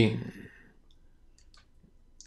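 A few faint, scattered small clicks, with the tail of a spoken word at the start.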